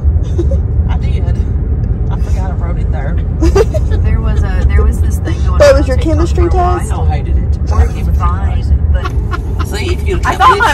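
Steady low road and engine rumble inside the cabin of a moving car, with quiet voices talking at times over it.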